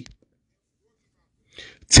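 A man's voice breaks off, leaving a pause of near silence; near the end a short, sharp burst of breath comes just as his speech starts again.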